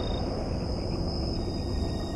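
Crickets chirping steadily in a night ambience, with a low steady hum underneath.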